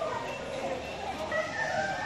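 An animal's drawn-out pitched call, strongest in the second half.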